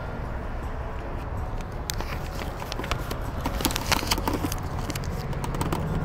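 A car's starter tried with the key: a run of sharp, irregular clicks from about one to four and a half seconds in, with the engine not cranking at all. A low steady rumble lies underneath.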